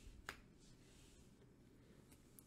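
Near silence with one short, faint click about a quarter of a second in: a Magic: The Gathering card being laid down on a stack of cards.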